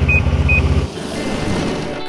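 Ski-Doo snowmobile engine idling with an even, low pulsing, with two short high beeps near the start. The engine sound cuts off about a second in, leaving a quieter, even background.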